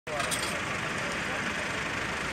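Steady noise of running vehicle engines and road traffic, with indistinct voices in the background.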